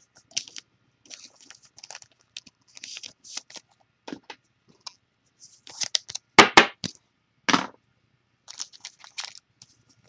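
Trading cards and red foil card-pack wrappers being handled, with scattered short crinkles and clicks and a louder cluster of crackling about six seconds in.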